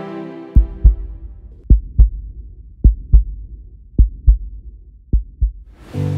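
A slow heartbeat: five lub-dub double thumps, deep and short, a little over a second apart, after music fades out at the start. Music comes back in just at the end.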